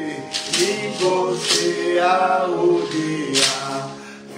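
A man singing a hymn solo, his melody rising and falling through a phrase, with a short hiss cutting in every second or two.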